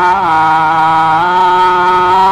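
A man singing a devotional prayer melody in long held notes, his pitch dropping a step early on and rising back about a second later.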